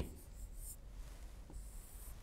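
Stylus writing on the glass screen of an interactive whiteboard: two short, faint, high-pitched scratching strokes, the first early and the second near the end.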